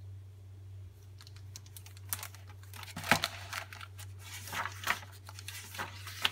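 A plastic-jacketed hardcover picture book being opened and its pages turned by hand: a run of irregular rustles, crinkles and soft clicks that starts about a second and a half in, the loudest about three seconds in. A steady low hum lies underneath.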